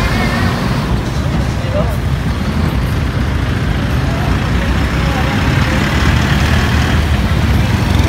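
Steady low rumble of road vehicle engines as a large passenger bus pulls away, with brief faint voices in the first two seconds.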